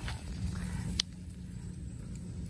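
A single sharp click about a second in, over a steady low rumble.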